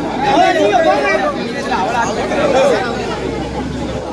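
Crowd chatter: several men talking over one another, with no other sound standing out.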